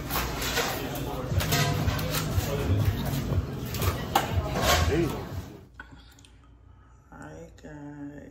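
Busy restaurant din: indistinct chatter with music under it and a few sharp clinks. It cuts off suddenly about two thirds of the way through to a much quieter room where a voice is heard briefly near the end.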